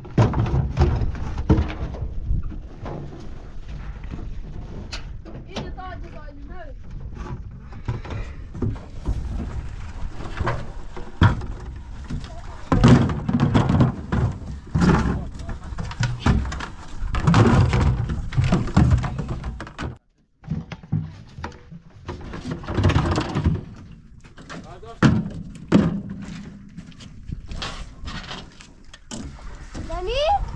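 Plastic water containers being handled and unloaded from a metal truck bed, with repeated knocks and thuds.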